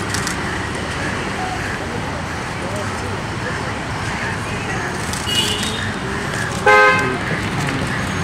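A vehicle horn gives one short honk about two-thirds of the way through, over a steady bed of street traffic and background chatter.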